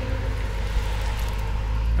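A large truck driving past, a deep rumble with road noise that grows louder toward the end.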